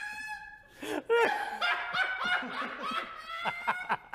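A man laughing hard: long drawn-out 'haaa' laughs that break into short 'ha' bursts, coming quicker near the end.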